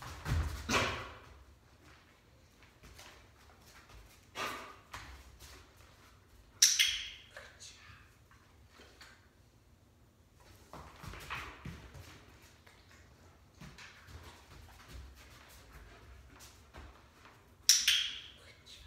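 Two sharp high-pitched clicks, about eleven seconds apart, with soft scuffs and rustles between them from a German Shepherd-type dog moving about on foam floor mats.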